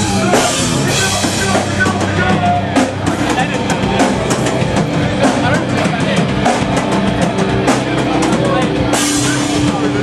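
Metallic hardcore band playing live and loud: bass and electric guitar over a pounding drum kit. A run of rapid, separate drum hits fills the middle, and the full cymbal wash comes back about nine seconds in.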